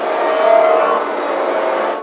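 A rushing whoosh sound effect that swells up, is loudest about half a second in, and cuts off suddenly near the end.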